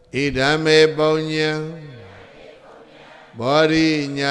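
A man's voice chanting a Buddhist recitation on a steady, held pitch: one drawn-out phrase of about two seconds, then a second phrase beginning near the end.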